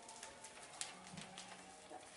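Quiet classroom room tone with a few faint clicks and rustles from paper being folded and cut with scissors at the tables.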